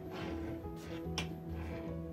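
Background music of steady held tones over a repeating low beat, with a short sharp click a little over a second in.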